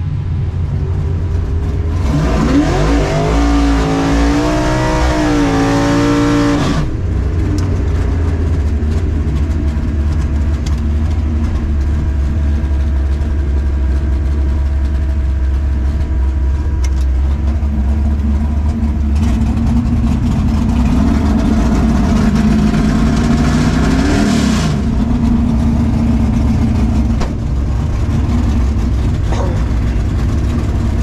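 Drag-race car engines running loudly, with a low steady drone between two spells of hard revving. The first spell is about two seconds in and lasts some five seconds; the second comes near the twenty-second mark, its pitch rising and falling.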